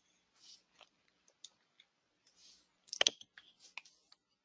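Faint scattered clicks and soft rustling noises, with a louder cluster of sharp clicks about three seconds in.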